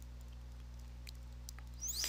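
Faint ticks and scratches of a stylus writing on a tablet screen, over a steady low electrical hum.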